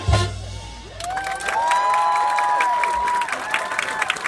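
A marching band's final loud hit at the very start, ringing out for about a second, then a crowd cheering, whooping and applauding the end of the piece.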